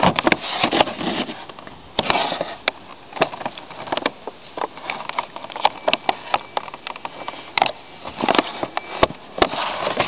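Clear plastic display packaging of a model locomotive being handled and moved on a wooden table: irregular clicks, crackles and scraping rustles throughout.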